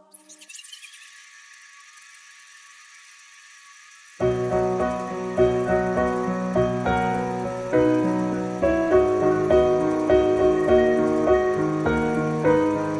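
A faint steady hiss, then about four seconds in an instrumental introduction begins, led by piano-like struck notes over a low rhythmic bass.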